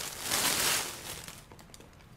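Rustling of a reusable shopping bag and the items inside it as they are pulled out. There is one burst of rustling for under a second, followed by a few faint ticks.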